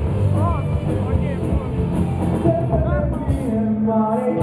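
Rock band playing live with electric guitars, bass and drums, and a voice singing in short bending phrases over the band.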